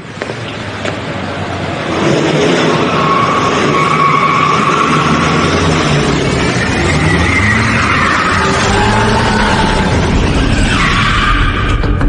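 A car speeding up with its engine revving and tyres squealing. It grows loud over the first two seconds, then stays loud, with wavering squeals through the rest.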